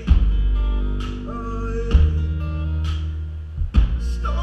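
Live band music through a concert PA: guitar over heavy, sustained bass notes, with a sharp drum hit about once a second.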